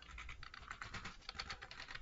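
Typing on a computer keyboard: a quick, uneven run of light key clicks.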